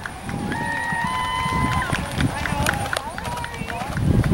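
A horse cantering on a sand arena, its hoofbeats dull, irregular thuds. About half a second in, a voice holds a long, steady, high call for over a second, then shorter rising and falling calls follow.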